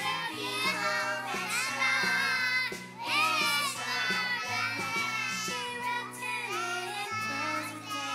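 A group of three- and four-year-old children singing a Christmas song together into microphones, over a musical accompaniment with steady held low notes.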